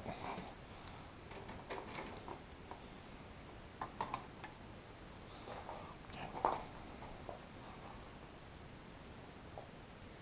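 Faint clicks and rustles of hands handling cables and alligator clamps, scattered over a quiet background.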